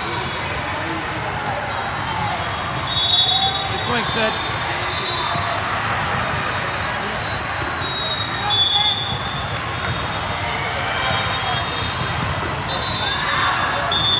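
Busy volleyball tournament hall: many overlapping voices, with volleyballs thudding on hands and the court floor, echoing in a large hall.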